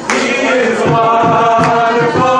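Gospel vocal group singing together in held, harmonised notes, with beatbox percussion thumping beneath the voices.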